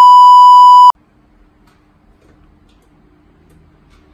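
Very loud steady electronic beep tone at a single high pitch, cutting off sharply about a second in. After it, only faint room noise with a low steady hum.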